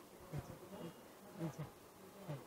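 Faint murmur of distant voices, a few short low syllables, over quiet room tone.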